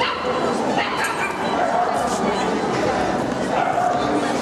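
A small dog yapping and yipping over the steady chatter of a crowd of people.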